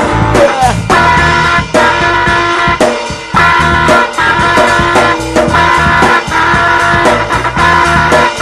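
Rock music: an electric guitar playing a repeating riff over drums, with no singing.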